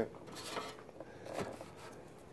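Faint handling noise of someone rummaging for a bass pick: soft rubbing and a few small clicks.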